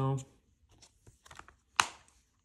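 Plastic Blu-ray case being handled with faint rustles, then snapped shut with one sharp click near the end.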